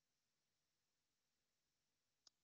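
Near silence: the audio track is essentially empty, with only a faint hiss.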